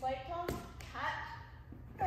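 Quiet speech in short phrases, with a single sharp tap about half a second in.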